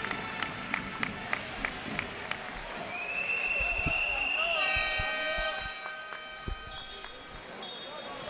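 A basketball dribbled on a hardwood court, a scattered series of short bounces and footfalls. A high steady squeal runs for under two seconds about three seconds in, and faint voices from the hall follow it.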